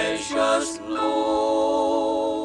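Male gospel quartet singing in close harmony. A new phrase comes in with a few quick sung syllables, then the voices hold a steady chord from about a second in.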